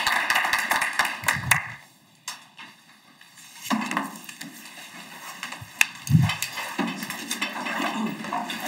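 Small audience applauding, the clapping stopping about two seconds in. Then low room noise of people getting up and moving about, with a few sharp knocks and a low thump about six seconds in.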